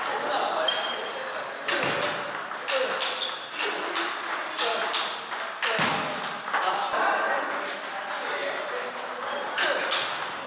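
Table tennis balls clicking off rackets and table tops: many sharp, irregular strikes, with indistinct voices in the background.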